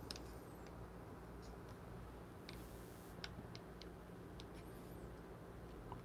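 Very quiet: a faint steady low hum, with a few faint small clicks and ticks in the middle from the recording phone being handled and moved in closer.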